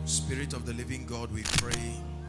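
Soft held keyboard chords with indistinct voices over them, and a sharp click about one and a half seconds in.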